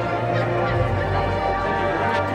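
High school marching band playing: held brass chords over a low bass line that changes note a few times.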